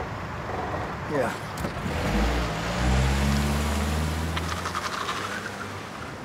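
Car engine running, a low drone that swells about two seconds in and fades out near five seconds.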